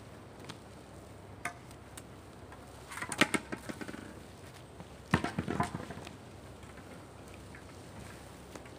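Two short bursts of rapid clattering knocks, about three seconds in and again about five seconds in, after a single earlier click.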